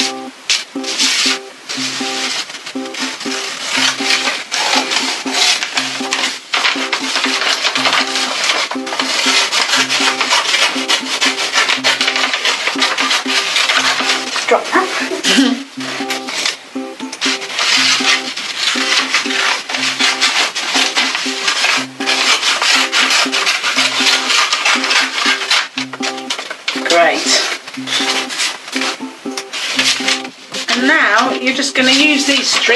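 Scissors cutting and rustling brown paper into long thin strips, close and loud, over background music with a low note repeating about every two seconds.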